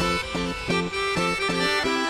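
Dance music led by an accordion playing a riff of short, detached chords, about four a second.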